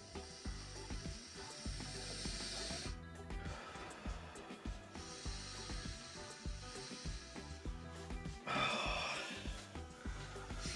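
Background music over slow, long, hissing breaths of a person inhaling herbal steam under a towel, followed near the end by a short burst of towel rustling as the towel is lifted off.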